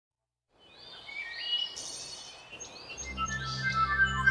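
Birds chirping and whistling in quick, sweeping calls, starting about half a second in after a moment of silence and growing louder. Music with a low, sustained drone and held tones fades in about three seconds in.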